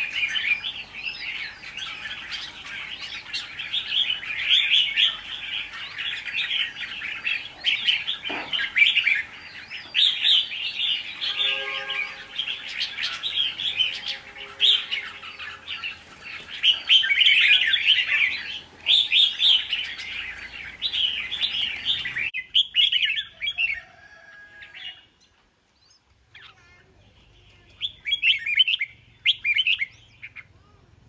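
Caged red-whiskered bulbul singing a fast, almost unbroken stream of bright chirping phrases. The song stops abruptly about three quarters of the way through, and after a quieter few seconds it starts again near the end.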